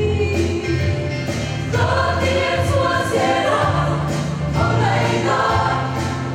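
A mixed choir of women and men singing a gospel song in parts under a conductor, over a low bass line that steps from note to note.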